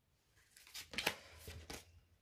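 An oracle card being laid down and slid into place on a tabletop: a short run of soft taps and brushing scrapes of card against the table, the sharpest about a second in.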